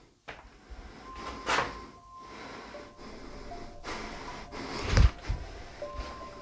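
A wooden door being handled and opened: a few sharp knocks and clicks, the loudest a heavy thump about five seconds in. Faint sustained tones hum underneath.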